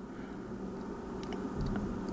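Faint handling noise of fingers moving the plastic flame-adjuster ring on a disposable lighter, with a few light ticks a little past a second in, over a low steady hum.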